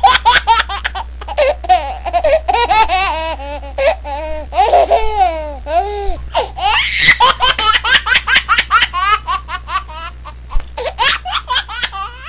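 High-pitched, hearty laughter: a long unbroken run of quick laughs, rising and falling in pitch.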